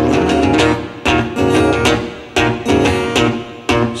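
Acoustic guitar strummed in chords with no voice, a strong strum roughly every second and a quarter with lighter strokes between, each chord left to ring.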